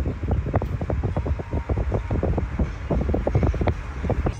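Wind and road noise of a moving car, heard from inside it: a steady low rumble with a dense run of short irregular crackles.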